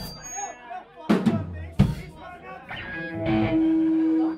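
Live punk band's drum kit struck a few times, loose single hits with cymbal splash rather than a song, over voices talking. A steady held note comes in about three seconds in.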